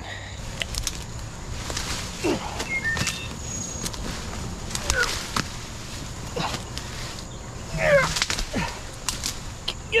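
Leafy brush and branches of a fallen pawpaw tree rustling, cracking and snapping irregularly as they are pulled and broken out of dense undergrowth, with a few short grunts of effort.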